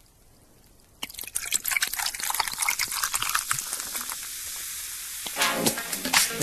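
A fizzy drink being poured: a sudden start about a second in, crackling and fizzing, then settling into a steady hiss. Music comes in near the end.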